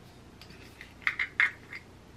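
Screw-top lid of a moisturizer jar being twisted open by hand: a handful of short, light clicks and scrapes, the loudest about a second in.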